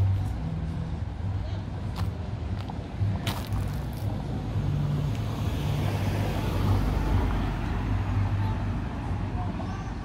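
Street traffic: a car passing on the road, its tyre noise swelling and fading around the middle, over a steady low engine rumble, with a few sharp clicks early on.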